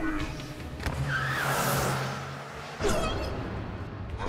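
Car sound effects: a power window whirring shut, then a car pulling away with a hissing rush and a low steady hum, and a sudden louder burst near the three-second mark.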